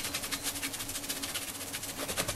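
A small machine running: an even, rapid rasping pulse, about thirteen times a second, over a faint low hum.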